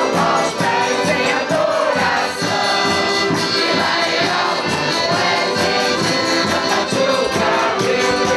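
A group of women singing a Portuguese folk song together, loud and steady, with a regular percussion beat behind the voices.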